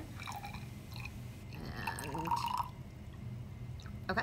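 Water poured from a plastic graduated cylinder into a plastic test tube, a faint trickle and splash that is clearest near the middle and dies away after.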